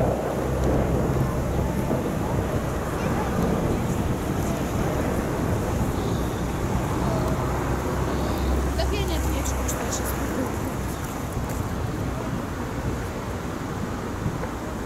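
Wind rumbling on the microphone over steady outdoor noise, with a few faint clicks about nine seconds in.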